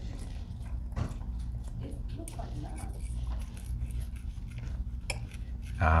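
Knife and fork on a plate, cutting into a piece of spanakopita: a few light clinks about one, two and five seconds in, with quieter scraping between them, over a steady low room hum.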